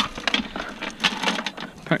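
Steel chain rattling and clinking in irregular clicks as it is handled against a steel excavator bucket.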